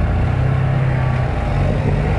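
Can-Am Maverick Trail 1000's V-twin engine running as the side-by-side drives through mud, heard from on board. The engine note holds steady, then breaks briefly a little past halfway before picking up again.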